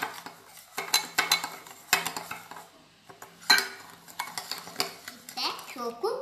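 A metal spoon stirring instant coffee, sugar and hot water in a glass bowl, clinking and scraping against the glass in irregular clusters of sharp clicks.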